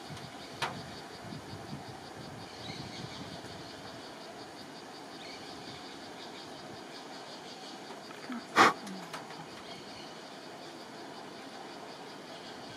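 Steady outdoor background noise with a faint, fast high-pitched pulsing, a small tick about half a second in and a single sharp knock about eight and a half seconds in.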